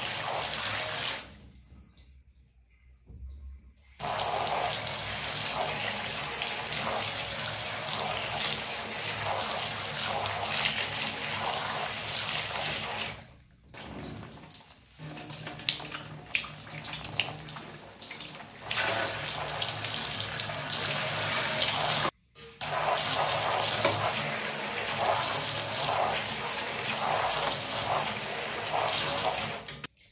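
Shower-style water jet spraying down onto three smartphones lying in a plastic tub: a steady rushing hiss of water. It cuts out abruptly for a few seconds starting about a second in, again around thirteen seconds, where it gives way to quieter broken splashing and dripping before the full spray returns, and for a moment around twenty-two seconds.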